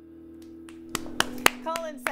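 The last chord of an acoustic band (acoustic guitar, upright bass, marimba) rings on and fades at the end of a song. About a second in come three or four sharp hand claps, the loudest sounds, and a voice begins near the end.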